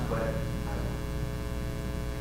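Steady electrical mains hum: a low, even drone with a ladder of higher overtones.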